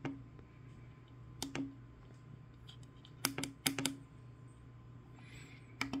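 Small tactile momentary push-buttons on a HackRF One PortaPack H2 clicking as they are pressed, about six separate clicks a second or so apart, the freshly soldered replacement button working. A low steady hum sits underneath.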